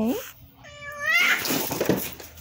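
Domestic cat giving a short yowl that rises in pitch, then a loud drawn-out hiss: a hostile warning at an unfamiliar cat.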